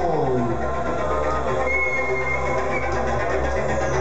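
Synthesizer intro of a live song: a pitch slides down at the start over steady held tones and a low bass drone, with a high thin tone in the middle and a high falling sweep near the end.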